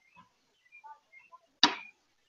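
Faint, scattered bird chirps, then one sharp knock about one and a half seconds in that dies away quickly.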